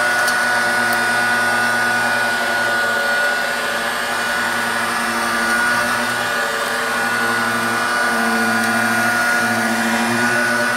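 1990s Dirt Devil Handy Zip corded handheld vacuum running steadily over carpet with its rotating brush bar, a constant high motor whine over a lower hum, with a brief tick of debris being sucked up right at the start.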